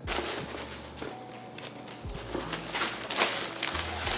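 Crumpled kraft packing paper crinkling and rustling as it is pulled out of a shipping box: a dense, continuous run of crackles.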